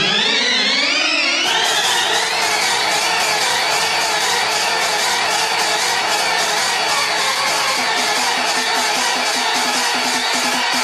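Electronic dance music in a DJ mix: rising synth sweeps build up and give way, about one and a half seconds in, to a dense, fast-pulsing section with little bass. A lower pulsing beat comes in near the end.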